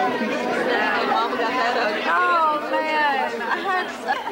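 Dinner-crowd chatter: many people talking at once in a busy dining room, with one voice standing out for a moment in the second half.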